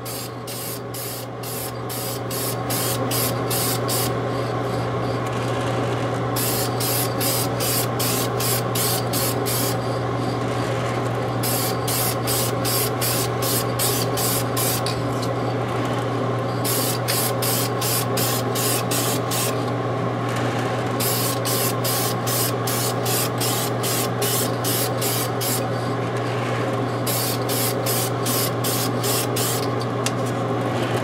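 Steady hiss of adhesion promoter being sprayed, coming up about two seconds in, with a fast even flutter that breaks off briefly every few seconds, over a steady low hum.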